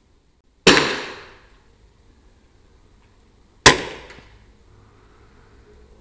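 Two shots from a Daystate Alpha Wolf 5.5 mm (.22) pre-charged pneumatic air rifle, about three seconds apart, each a sharp crack with a tail that dies away over about a second.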